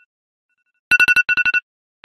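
A trilling telephone ringtone sound effect in the dance mix: two loud bursts of rapid rings about a second in, each ring echoing and fading in quieter repeats.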